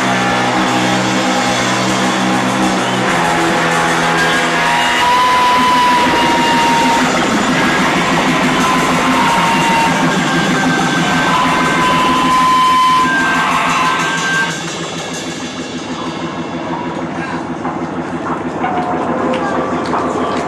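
Rock band playing live: drum kit and electric guitars with long held high guitar notes. About three-quarters of the way through the band drops off, leaving quieter, lingering guitar sound and room noise.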